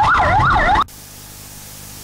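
Police vehicle siren in a fast yelp, its pitch sweeping up and down about three times a second, cut off abruptly under a second in. A faint steady hiss follows.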